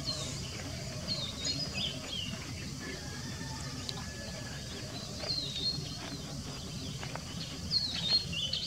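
Birds chirping: many short, high chirps scattered throughout, over a steady low background rumble.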